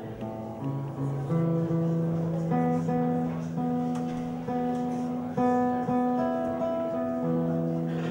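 Nylon-string classical guitar being tuned: single strings plucked and left ringing while a peg is turned, one low note stepping up in pitch about a second in.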